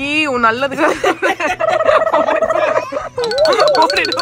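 A young child's voice, high and wavering like a whine, during a haircut, followed from about three seconds in by music with a fast, even ticking beat.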